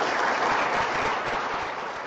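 An audience applauding: a dense, even patter of many hands clapping that begins to die away near the end.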